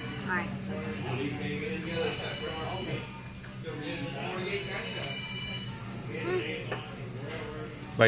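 Restaurant background sound: quiet talk in the room with music playing faintly and a steady low hum underneath.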